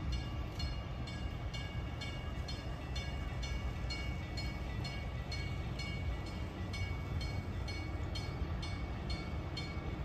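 Drawbridge warning bell ringing steadily, about two strikes a second, over a constant low rumble.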